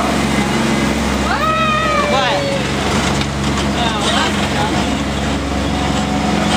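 Small ride train's engine running at a steady hum, with a person's drawn-out cry that rises, holds and falls about a second and a half in.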